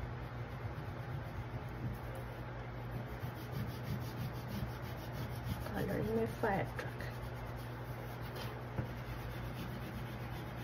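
Red wax crayon scratching and rubbing back and forth on paper as an area is coloured in, over a steady low hum. About six seconds in, a brief voice sound stands out above the crayon.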